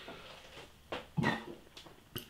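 A pause in a man's talk: faint room tone, broken just after a second in by a brief soft sound and a single drawn-out spoken 'a'.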